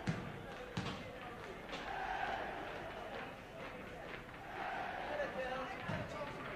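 A football bouncing on a hard floor: three sharp bounces in the first two seconds and another near the end, over a hubbub of voices.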